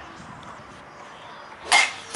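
Golf iron striking a ball off a tee mat: one sharp hit near the end, after a quiet stretch.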